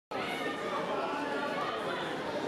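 Many people talking at once in a large sports hall: a steady babble of overlapping voices with no single clear speaker.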